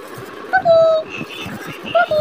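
A baby vocalizing: two high, drawn-out "aah" sounds of about half a second each, each held at one pitch, the first about half a second in and the second at the very end.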